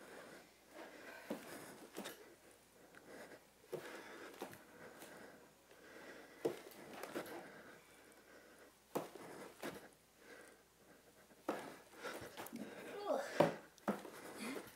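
Heavy breathing and sighing exhalations from people straining through repeated handstand jumps, with a few short knocks of hands or feet on the floor and a sigh near the end.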